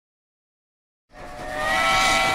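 Silence, then about a second in a steam locomotive's whistle starts up over a hiss of steam: several steady tones sounding together, swelling quickly in loudness.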